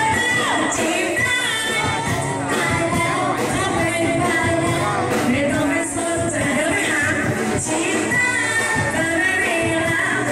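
A live pop song: several women singing together into microphones, backed by a band with a drum kit that keeps a steady beat.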